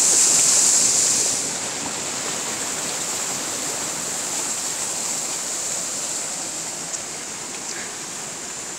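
Steady rush of flowing water. It is louder and hissier for the first second and a half, then even.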